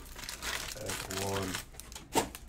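Foil trading-card pack wrappers crinkling in scattered crackles as they are handled, with a faint voice about a second in.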